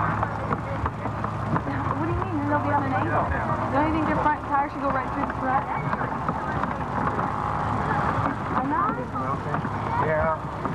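Indistinct voices calling and talking, with no clear words, over a low steady hum that drops away about three seconds in.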